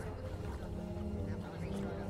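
Steady low machinery hum of a factory floor, with faint background music over it.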